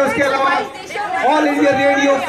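Speech only: a man talking, with other voices chattering around him.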